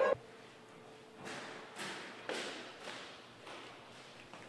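Footsteps climbing stairs, a series of soft steps roughly half a second apart with some echo.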